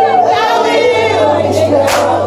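Music with a choir singing, several voices together in wavering sustained lines. There is a single sharp click near the end.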